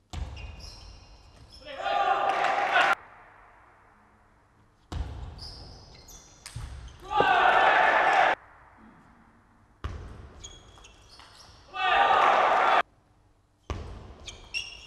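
Table tennis rallies: a celluloid-type plastic ball clicking sharply off bats and table in quick exchanges. Each rally ends in loud shouting of about a second. This happens three times, each segment cut off abruptly.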